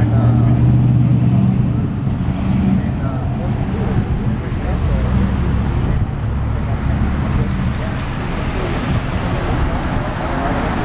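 Road traffic passing close by: a pickup truck and then cars driving past, with a steady low engine hum that is loudest in the first two seconds and tyre noise on the road.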